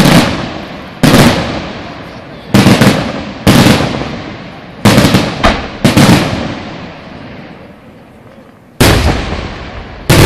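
Aerial firework shells bursting in a display finale: about eight loud bangs at uneven spacing, each dying away over a second or so, with a quieter gap of nearly three seconds before a last burst near the end.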